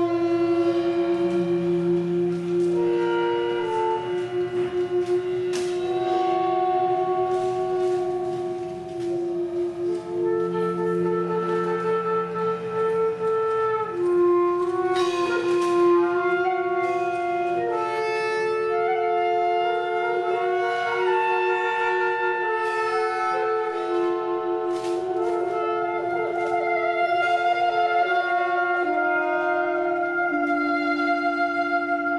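Saxophone quartet playing long, overlapping held notes that shift slowly from chord to chord, one note wavering near the end. A few light strikes from the drum kit sound now and then underneath.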